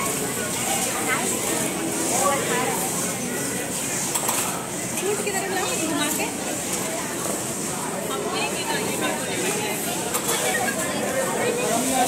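Crowd chatter: several people talking at once, with no one voice clear.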